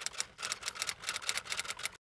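Typing sound effect: a rapid run of typewriter-style key clicks, about ten a second, that stops abruptly.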